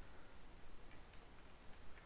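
Faint computer keyboard keystrokes: a few separate light taps as a word is typed.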